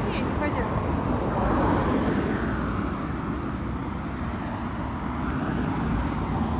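Road traffic going by on a city street: a passing vehicle's noise swells about one to two seconds in and then fades, over a steady low rumble.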